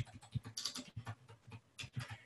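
Typing on a computer keyboard: a quick, uneven run of soft key clicks as cell text is entered.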